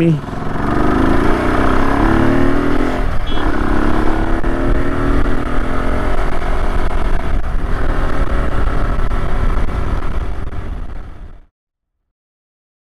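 Yamaha R15 single-cylinder motorcycle riding at speed, wind rushing over the camera microphone with the engine note rising a few times early on. The sound fades out about eleven seconds in.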